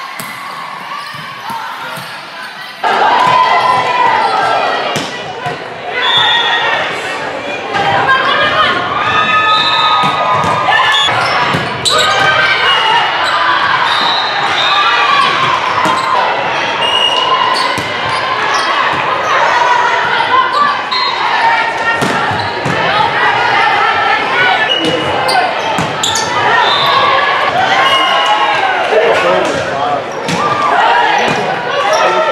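Indoor volleyball play echoing in a large gym: sharp slaps of the ball being hit, mixed with players calling and shouting. The sound gets suddenly louder about three seconds in.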